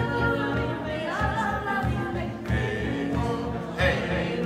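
A singer's voice, amplified through a microphone, sings a melody over an acoustic guitar playing a steady strummed rhythm.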